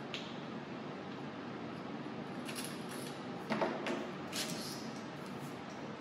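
Scattered clicks and light knocks of a camera tripod being handled as its horizontal arm is taken off and the centre column is set upright, with the loudest knock about three and a half seconds in.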